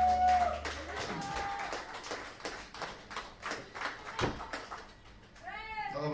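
The band's last chord rings out on electric guitar and bass and stops about a second in. Then a small audience claps. Near the end comes a short run of high, rising-and-falling vocal calls.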